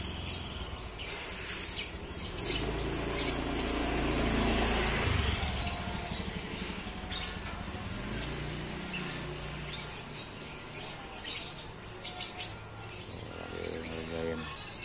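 Small birds chirping repeatedly in short high calls. A low rumble swells and fades between about two and six seconds in.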